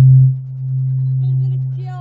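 A loud, steady low drone from the stage sound system, dropping in level about a third of a second in, with a faint voice coming in near the end.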